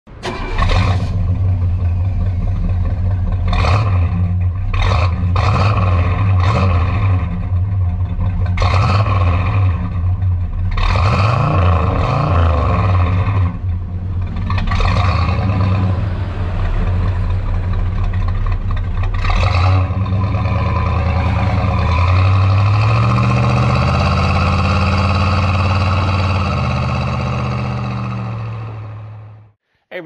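Exhaust note of a 1964 Pontiac GTO's Tri-Power 389 V8: the engine is idling, with a series of quick revs through the first two-thirds. It then runs more steadily, with its pitch stepping up, before fading and cutting off just before the end.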